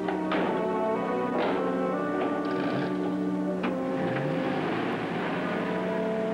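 Background music score with held chords and a few sharp accents.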